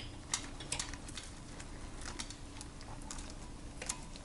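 A few irregular, faint clicks and light taps of gloved hands working a base gasket down over the cylinder studs of a GY6 scooter engine.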